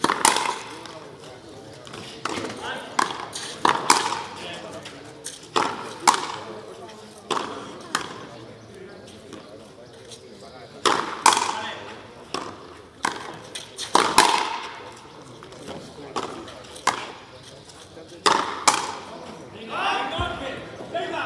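Frontenis rally: a hard rubber ball cracking off stringed rackets and the fronton's concrete wall, more than a dozen sharp impacts at irregular intervals, each ringing briefly off the walls.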